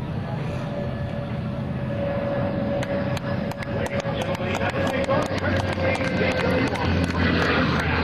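The twin Rolls-Royce Dart turboprop engines of a C-31A Troopship (Fokker F27) running during a low flypast. A steady whine drifts down in pitch through the middle while the low engine sound grows louder toward the end, with a crackle of sharp clicks from about three seconds in.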